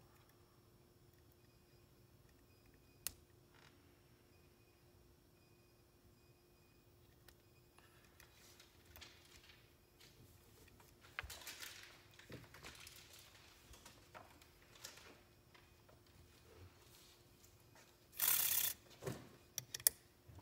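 Small metal clicks and scrapes from hand-adjusting the valve gear of an Accucraft Ruby live-steam model locomotive chassis while setting its valve timing; mostly quiet, with a single sharp click early on and busier fiddling in the second half. Near the end comes a brief loud clatter as the metal chassis is turned over and set down on the table.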